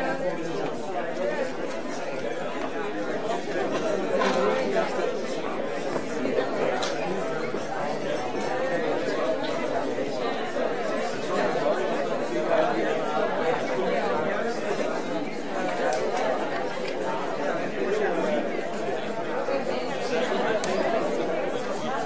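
Audience chatter in a large hall: many people talking at once, with no single voice standing out.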